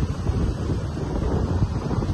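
Wind buffeting an outdoor microphone, a steady, heavy low rumble.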